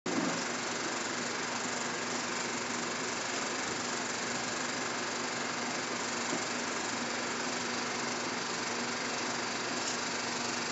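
Film projector running: a steady mechanical whir and hiss with a low hum, starting abruptly as it begins and holding even, with the film's blank leader giving no soundtrack yet.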